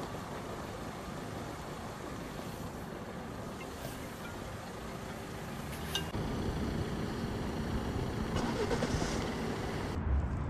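Outdoor street ambience with a steady hum of distant road traffic, which turns louder and deeper about six seconds in.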